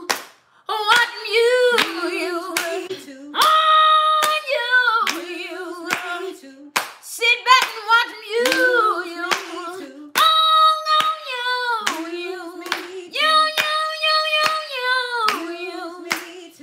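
Women singing a gospel song unaccompanied, with hand claps keeping a steady beat.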